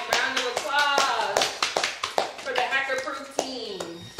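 A few people clapping their hands in short, irregular claps, with voices over them.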